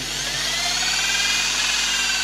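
Electric drill with a 2 mm bit running steadily as it drills through a soft lead buckshot pellet held in pliers. The motor's whine rises slightly in pitch and then eases off again.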